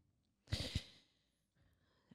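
A brief breathy sigh about half a second in, the rest near silence.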